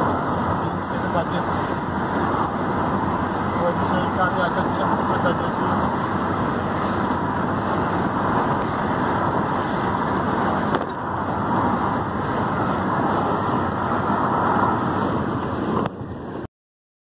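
Wind rushing over the microphone and road noise from a car driving with its window open, a steady rush.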